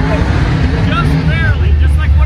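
Car engine idling with a steady low rumble, while people talk over it.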